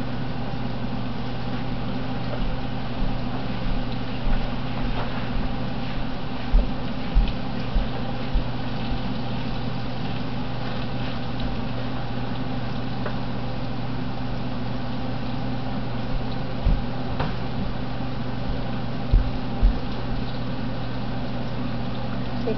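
Breaded okra frying in hot olive oil in a cast-iron skillet: a steady sizzle over a low steady hum, with a few short knocks as more okra is shaken from a bowl into the pan.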